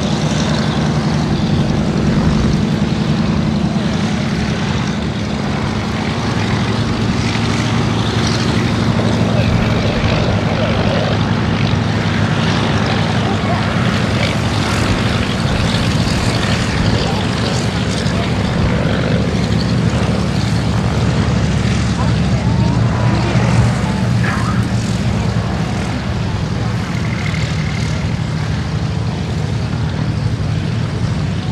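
Radial engines of Douglas DC-3/C-47 Dakotas taxiing past one after another, a steady, deep propeller drone. Its tone shifts a little about a quarter of the way in and again near the end as one aircraft gives way to the next.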